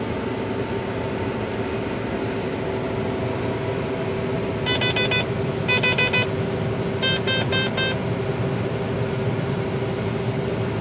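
Inside a combine harvester's cab: the combine runs with a steady drone and hum, broken by three short bursts of rapid electronic beeping from the cab's alarm, about five, six and seven seconds in, the last burst the longest.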